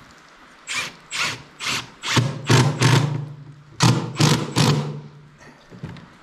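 Cordless drill driving screws into wooden boards, in a series of short bursts that grow longer, with a brief pause about halfway through.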